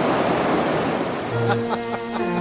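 Steady rushing noise of river whitewater rapids. About two-thirds of the way through, music with long held notes comes in over it.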